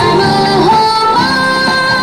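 Dance music with a singing voice holding long, gliding notes over an instrumental accompaniment with a stepping bass line, at a steady level.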